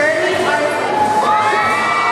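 Large crowd cheering and shouting, with several long held calls rising above it from about halfway through.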